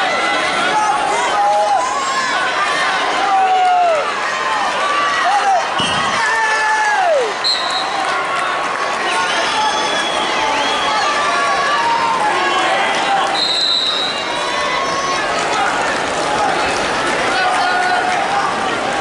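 Arena crowd noise: many spectators and coaches shouting and calling out at once over a steady hubbub, with a dull thud about six seconds in and two brief high tones later on.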